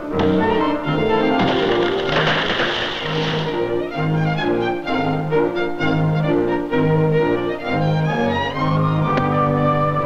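Orchestral film score with strings and brass over a regularly pulsing bass figure. About a second and a half in, a rushing swell of noise rises over the music for about two seconds.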